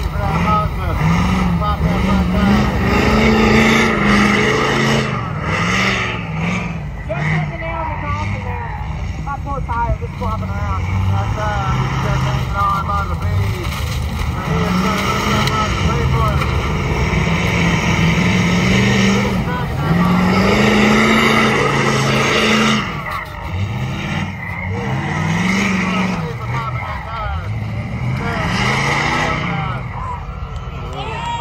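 Off-road truck's diesel engine revving hard again and again, its pitch rising and falling in long sweeps, with tyres spinning in loose sand as it drags a wrecked vehicle.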